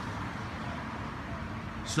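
Steady outdoor background noise picked up by a handheld phone microphone carried on a run, with no distinct event standing out.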